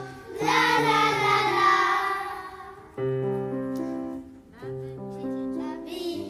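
Children's choir singing a gentle song with grand piano accompaniment, in phrases with short pauses between them.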